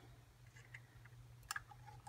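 Near silence: a low steady room hum and a few faint light clicks, the clearest about one and a half seconds in. The clicks come from a plastic stir stick touching the paint cup as green paint is poured off it.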